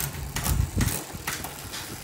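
Road bike drivetrain turned by hand in a workstand: the chain whirs over the rear cassette and through the rear derailleur, with a run of irregular clicks, as it is shifted up the cassette one sprocket at a time to check the freshly adjusted shifting.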